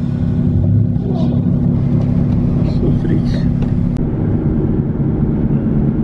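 Steady low engine drone and road noise heard from inside a car, a constant hum under a rumbling hiss.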